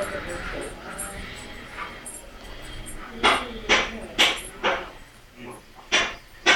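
A dog barking in short sharp barks, four of them about half a second apart a few seconds in, with faint voices in the background.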